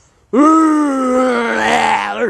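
A boy's voice holding one long, loud, horn-like note, mimicking the blast of a conch shell blown to call a meeting. It starts abruptly about a third of a second in, and its pitch sags slowly as it is held.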